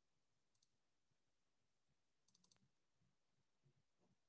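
Near silence: faint room tone with a few soft clicks, a pair about half a second in and a quick run of several about two and a half seconds in.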